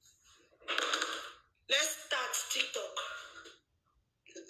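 A woman talking in two short stretches, her words not made out.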